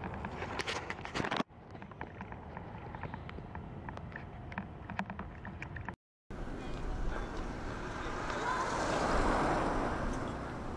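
Outdoor ambience in edited pieces: wind on the microphone with scattered clicks, a brief total dropout about six seconds in, then a steady city-street rush that swells near the end and eases off.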